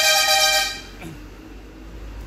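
A vehicle horn honking once, a loud steady buzzy tone lasting just under a second.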